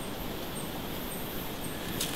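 Quiet bush ambience: a steady soft background hiss with a small bird's faint, high, short chirp repeating about every half second.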